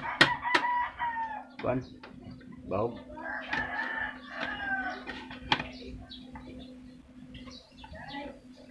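A rooster crowing twice: one long call right at the start, and a second about three seconds later, each holding its pitch and then falling away.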